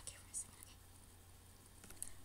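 Near silence: room tone with a faint low steady hum and one short, breathy mouth sound about half a second in.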